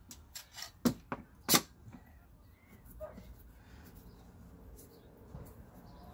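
Metal bar clamps being handled and tightened on a glued-up wooden guitar neck blank: a few sharp clicks and knocks in the first two seconds, the loudest about a second and a half in.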